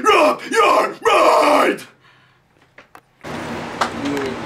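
Harsh growled hardcore vocals shouted into a studio microphone in short strained phrases, stopping abruptly about two seconds in. After a brief silence a steady low room noise comes in.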